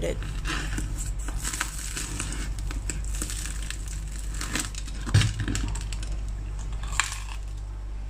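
Crust of a freshly baked sourdough loaf crackling as it is torn apart by hand: a run of small, crisp cracks, with one louder knock about five seconds in.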